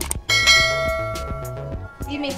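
A bright bell chime sound effect, struck once about a quarter second in and ringing away over about a second and a half, from the subscribe-button animation, over background music with a steady beat.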